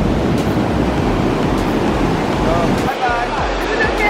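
Ocean surf breaking and washing up the sand in a steady rush, with a low rumble underneath.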